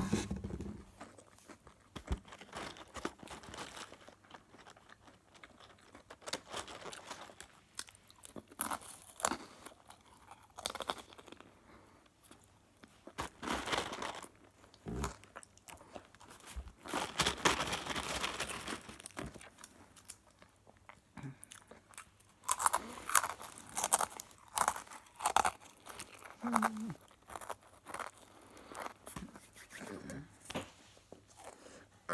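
Dry, salty pretzel sticks being crunched and chewed in irregular bouts, with short pauses between mouthfuls. A single sharp knock right at the start.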